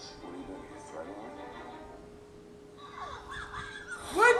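Trailer soundtrack: quiet speech over a steady held music note, then high-pitched laughter about three seconds in.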